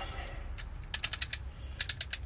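A snap-off utility knife's blade being slid out: the slider ratchets notch by notch, with a quick run of clicks about a second in and a few more near the end.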